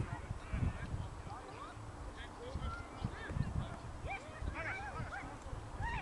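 Wind rumbling on the microphone, with scattered distant high calls that rise and fall in pitch, most of them in the second half.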